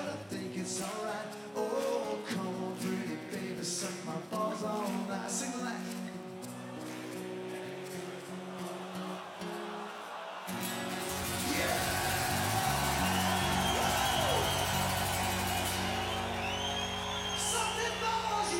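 Steel-string acoustic guitar played solo, picked and strummed through the close of a song. About ten seconds in, a deep sustained chord swells under a large crowd cheering, with whistles.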